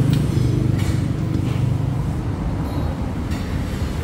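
A steady low mechanical drone, with a couple of faint clicks from hand tools on the scooter's exhaust.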